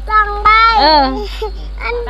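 A high-pitched, sing-song voice, child-like, gliding up and down in pitch, with quieter voice fragments after about a second and a half.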